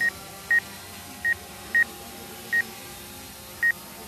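Short electronic beeps, each one high tone, six of them at uneven spacing over about four seconds, above a steady low background noise.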